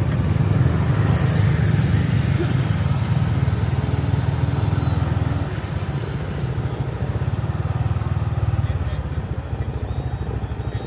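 Motorbike traffic running close by on the street: a steady low engine hum, louder for the first half and easing about halfway through.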